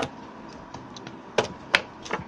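A few light clicks and taps of handling on a desk: one as the ball-tipped embossing tool comes to rest near the start, then two more close together about a second and a half in.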